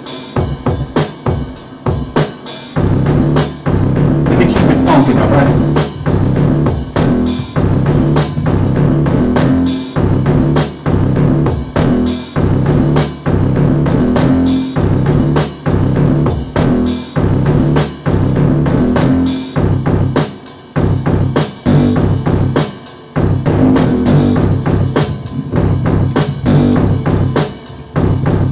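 Akai XR20 drum machine playing a steady programmed beat of kick and snare, with a bassline from the same setup coming in strongly a couple of seconds in.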